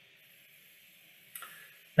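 Near silence, then about a second and a half in a short click followed by a brief soft intake of breath.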